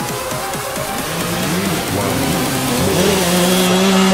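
Enduro dirt bike engine revving up and down as the bike approaches, growing louder, with background music under it.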